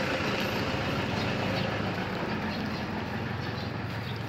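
A vehicle engine idling: a steady low hum under an even rush of noise.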